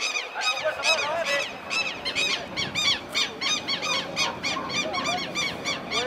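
A bird calling over and over in a fast run of short, high, arched chirps, about four a second.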